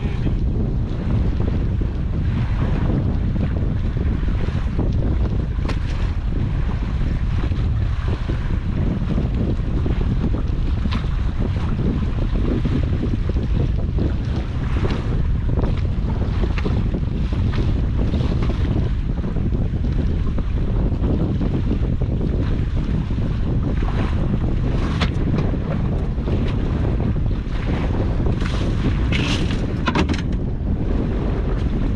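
Wind buffeting the microphone, a steady low rumble, with a few scattered light knocks and clicks.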